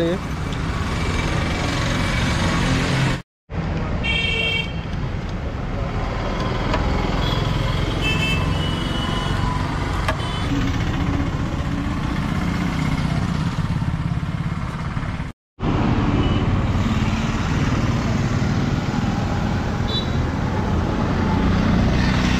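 Roadside traffic noise, a steady rumble of passing vehicles, with a short vehicle horn toot about four seconds in and fainter toots later. The sound is broken by two brief silent gaps.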